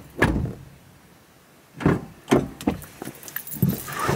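A person climbing into a car's driver seat through the open door: a sharp knock just after the start, a short quiet, then a run of thumps and knocks from about two seconds in as she settles into the seat.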